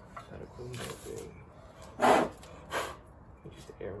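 Two short, sharp puffs of breath, the first about two seconds in and a weaker one just after, over faint murmur.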